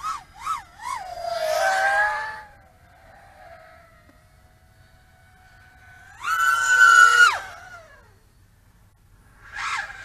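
Brushless motors of an HGLRC Sector 5 V3 FPV quadcopter on a 6S battery whining in flight, a faint steady whine for a few seconds. Past halfway the whine jumps to a loud, high-pitched scream at one flat pitch for about a second, cuts off and slides down in pitch, with a shorter burst near the end.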